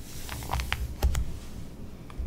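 Hands pressing and smoothing the glossy pages of a magazine flat, giving a few short soft paper taps and swishes, the loudest about a second in.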